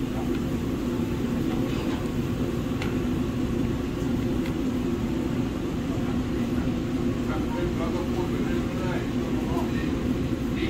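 Steady mechanical hum of running kitchen equipment, even in level throughout, with faint voices in the background from about seven to nine and a half seconds in.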